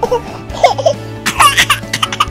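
Background music with a high-pitched cartoon voice giggling in two short bouts, one about half a second in and one near the end.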